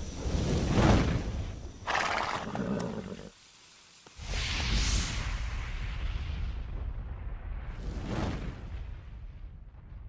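Produced intro sound effects: whooshes and swishes with a horse neigh, loudest about a second in. After a brief hush, a rising swish and another whoosh follow, fading out near the end.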